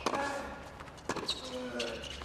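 Tennis ball struck by racquets and bouncing on a hard court during a baseline rally: a sharp hit at the start, another about a second in, and lighter knocks near the end.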